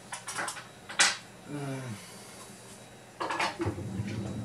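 Clicks and light clatter of small hard plastic objects, a handheld battery tester and AAA batteries, being handled and put away on a desk. There is a sharp click about a second in and a cluster of rattling clicks near the end.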